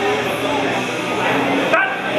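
Several people shouting and yelling loudly at a bench presser mid-lift, with a brief dropout near the end.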